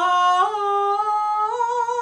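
A woman singing a held vowel that climbs step by step up a short scale, as a vocal exercise. About half a second in, the tone turns thinner, which fits a deliberate flip from chest voice into head voice.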